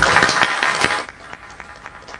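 Audience applauding briefly; the clapping stops about a second in.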